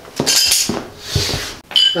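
Half-inch black steel pipe nipples clinking and knocking against each other and the concrete floor as they are handled, with a short metallic ring near the end.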